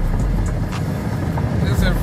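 Car cabin noise at freeway speed: a steady low rumble of tyres, road and engine heard from inside the car.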